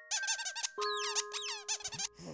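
Playful cartoon squeak sound effects: a rapid run of high, wavering squeaks, then a second run with falling sweeps, over a held chime note that comes in about halfway through.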